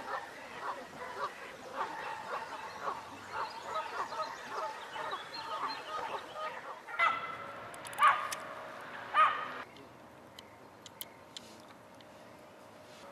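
Waterfowl calling on the water: a quick run of short calls for the first several seconds, then three loud honks about a second apart.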